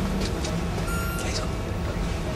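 Steady low hum of hospital room equipment, with one short electronic beep from a patient monitor about a second in.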